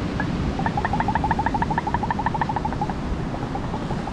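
A bird trilling: a fast, even run of short high notes, about eight a second, for two or three seconds, with fainter notes going on after. Surf and wind noise run underneath.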